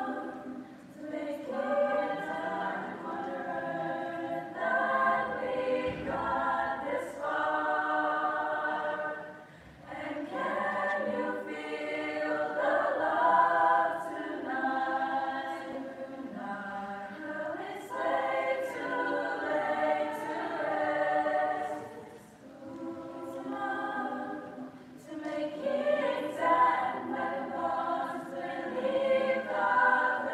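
A choir singing, in phrases broken by two brief pauses, about ten seconds in and about twenty-two seconds in.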